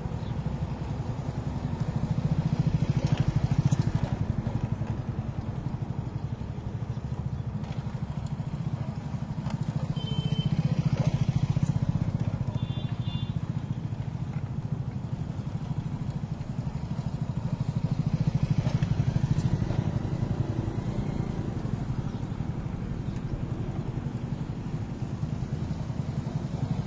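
Motorcycle engine running steadily at low speed as it pulls the beam of a wooden kolhu oil press round and round, turning the press in place of a bullock. Its sound swells and fades about every eight seconds as it circles near and away.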